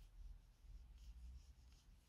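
Near silence with faint, soft scratchy rustles, a few light strokes, from a metal crochet hook drawing yarn through stitches while working double crochet.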